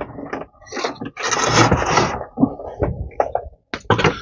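Antenna cable's metal coaxial plug being handled and fitted onto the decoder's antenna input: scattered clicks and a scrape lasting about a second in the middle.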